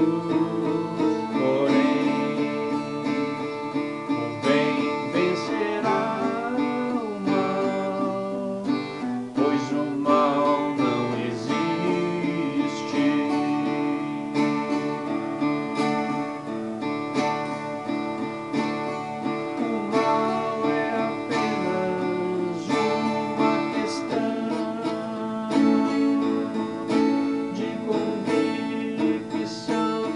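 Twelve-string acoustic guitar played solo, a busy run of strummed chords and picked notes at several strokes a second.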